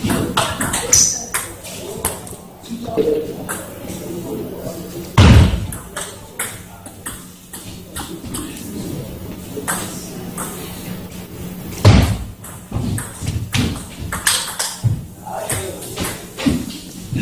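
Table tennis rallies: the ball clicking sharply off the rubber of the bats and the table in quick exchanges, with voices in a reverberant hall. Two loud thumps stand out, about five seconds in and again about twelve seconds in.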